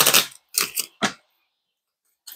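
A deck of tarot cards being shuffled by hand: three short riffling bursts in the first second or so.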